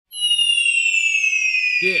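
The opening of a wrestling entrance theme: a single high tone glides slowly and steadily downward in pitch. A man's shouted "Yeah" comes in near the end.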